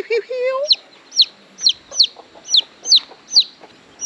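A baby chicken chick held in a hand, peeping loudly: about ten short, high, falling peeps, two or three a second, typical of a chick separated from its hen. A brief lower call rises just after the start.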